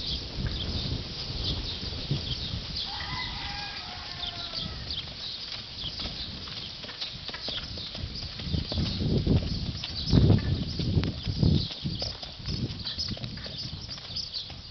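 A ridden horse's hooves thudding dully on a sand arena in a steady gait, the thuds growing louder from about nine to twelve seconds in.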